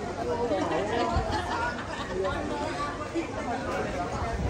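Several people chattering, their voices overlapping with no clear words.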